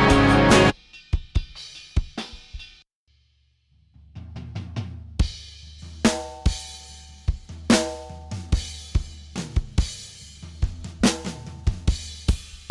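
Full band mix cuts off abruptly under a second in, leaving recorded drum kit tracks playing on their own: kick, snare, hi-hat and cymbals. The drums stop for about a second around three seconds in, then resume in a steady beat.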